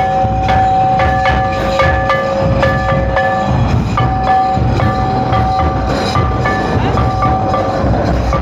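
Music for a Santal line dance: a steady, regular drum beat under held melodic tones that shift in pitch over a sustained drone.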